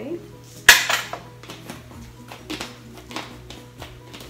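Metal kitchen utensils clinking against dishes: one sharp clink under a second in, then several lighter clinks, over soft background music.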